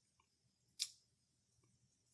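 Near silence with one short, sharp click a little under a second in, and a few fainter ticks around it.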